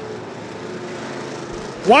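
IMCA stock cars' V8 engines running at race speed around a dirt oval, heard at a distance as a steady drone. A man's voice comes in near the end.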